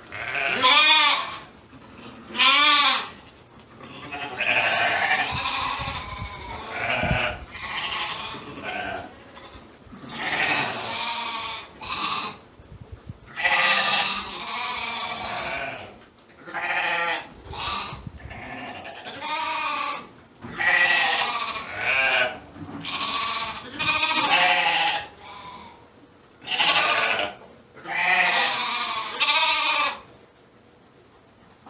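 A flock of Shetland sheep bleating, one quavering call after another with only short pauses between them.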